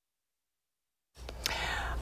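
Dead silence for just over a second, then a broadcast studio microphone opens with a steady low hum and a soft hissing rush that swells just before speech begins.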